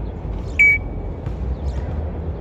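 A parrot gives one short, high, beep-like whistle about half a second in, over a steady low rumble.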